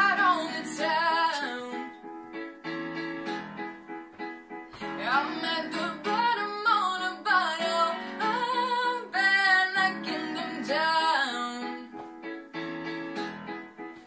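A young girl singing a slow pop song with piano accompaniment, in sung phrases with short pauses where only the piano carries on.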